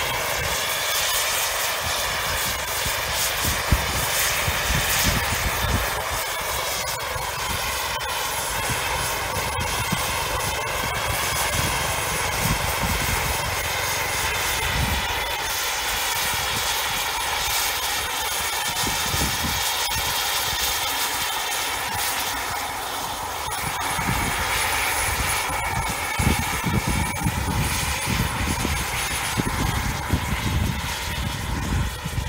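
A Bell 206 JetRanger helicopter flying low and manoeuvring: a steady engine and rotor whine whose pitch slowly rises and falls as it moves about. Gusts of wind rumble on the microphone.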